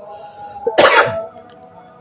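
A person coughs once, a short loud burst close to the microphone, about three-quarters of a second in.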